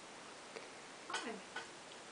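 Quiet room tone with two faint, short clicks about a second apart, and a single softly spoken "hi" in between.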